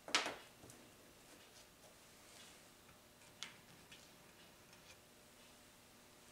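Small objects handled on a workbench: a short clatter just after the start, then a few faint, sharp ticks over the following seconds, like a small plastic cup and tools being picked up and set down.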